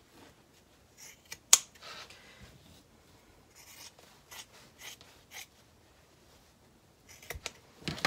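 Fabric shears snipping through layers of cotton to trim a seam allowance: a run of separate cuts with short gaps between them, the sharpest about a second and a half in.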